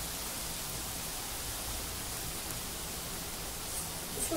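Diced bottle gourd cooking in oil in a pan, giving a steady, even hiss as its moisture steams off.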